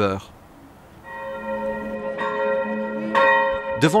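Church bell ringing. It starts about a second in, and new strokes come about two and three seconds in, each note hanging on and sounding out over the one before.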